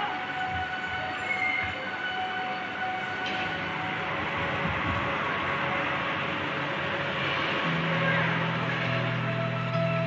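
Ambient background music: a steady rushing wash with soft held tones, and a low sustained chord that comes in about three-quarters of the way through.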